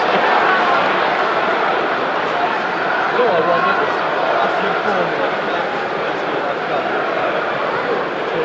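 Football stadium crowd: a steady mass of many voices talking and calling at once, heard from among the spectators in the stand.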